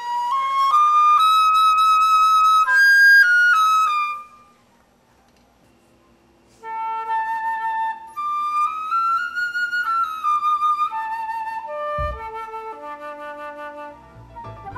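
Silver concert flute played in two short melodic test phrases, separated by a pause of about two seconds, as a newly made headjoint is play-tested and evaluated by ear.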